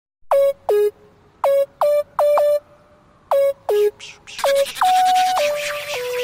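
Intro of a hip-hop beat: a synth lead plays short notes in a sparse pattern, each note dropping sharply in pitch at its start. A little past four seconds, fuller layers of the beat come in underneath and keep going.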